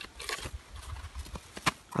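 A mink rummaging in a plastic-covered bucket of fish, a run of irregular rustling and clicking.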